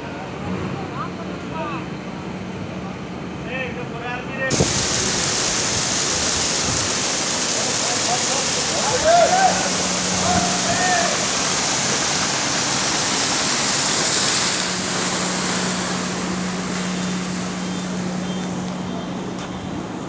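Thick slurry gushing from a submersible slurry pump's discharge hose into a pit: a loud, steady rushing that starts suddenly about four seconds in, with a steady low hum under it.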